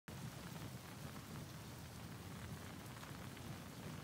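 Steady rain falling, faint and even throughout.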